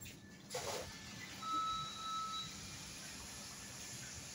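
An electronic beep: one steady tone about a second long, over the steady background noise of a fast-food restaurant, with a brief noisy sound just before it.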